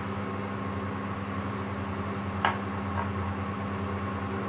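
A wok of red curry paste and milk cooking over an electric hob: a steady low hum with a faint hiss, and one sharp knock about two and a half seconds in, as of a utensil against the pan, with a lighter tap just after.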